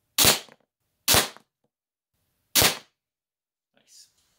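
Pellet gun fired three times, sharp cracks with short tails: the first two about a second apart, the third about a second and a half later.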